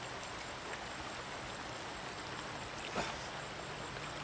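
Shallow river running over rocks: a steady rush of water, with one short faint sound about three seconds in.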